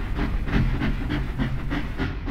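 Steam train chugging: a quick, even run of chuffs at about five a second.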